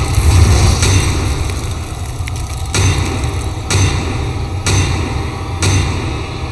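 Trailer soundtrack: a deep, pulsing bass rumble, joined from about three seconds in by sharp hits roughly once a second.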